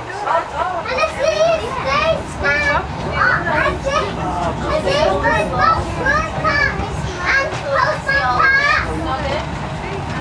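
Several children's excited voices chattering and calling out over one another, high-pitched and continuous, over the steady low rumble of the moving tram.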